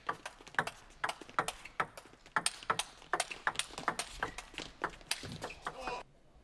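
Table tennis rally: the celluloid ball clicking sharply off bats and table in quick alternation, about two to three knocks a second, which stop abruptly near the end.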